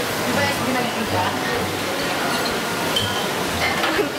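Busy buffet restaurant din: a steady wash of noise with indistinct chatter from other diners running underneath.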